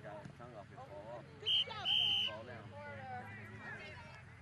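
A whistle blown twice about 1.5 s in, a short blast and then a longer one, stopping play. It is heard over the shouting and chatter of young children and onlookers.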